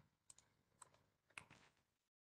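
Three faint clicks about half a second apart, with near silence between them.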